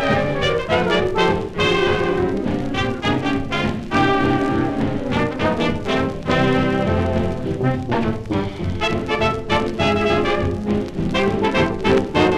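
1932 big band dance record playing an instrumental passage with horns over a steady beat, heard as a raw transfer from a 78rpm shellac disc with no noise reduction.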